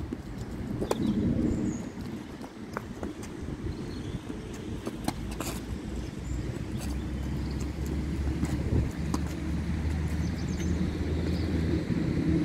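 Tennis ball struck by rackets and bouncing on a hard court in a rally, a scatter of sharp pops over a steady low rumble, with a deeper steady hum joining about seven seconds in.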